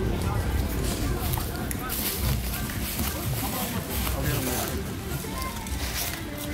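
Background music with indistinct talk from people standing close by.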